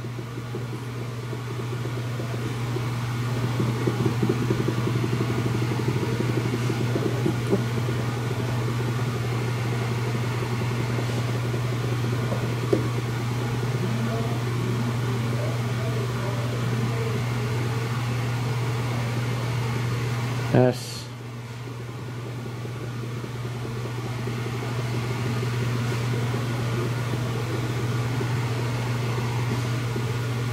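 A steady low hum of background noise. About twenty seconds in there is a click and a sudden drop in level, after which the hum builds back up over a few seconds.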